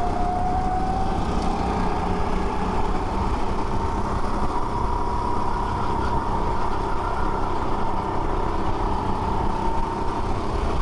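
Go-kart engine running at racing speed, heard from on board: its pitch climbs gradually over the first few seconds as the kart accelerates, then holds fairly steady, over a constant rush of wind and road noise.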